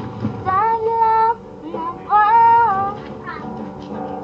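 A boy singing a Filipino ballad over a strummed acoustic guitar, holding two long notes: one about half a second in and a louder one about two seconds in, each sliding up into the note.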